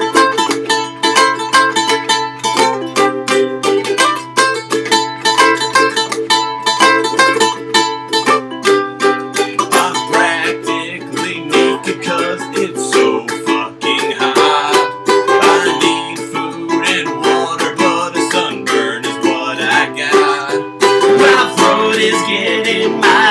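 Two ukuleles strummed together in an instrumental break, a steady rhythm of chord strokes.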